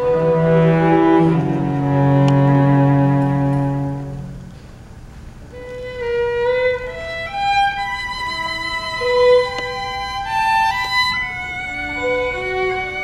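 A string orchestra holds sustained chords with cellos and basses beneath, fading out about four seconds in. A solo violin then plays a melody alone, one held note after another.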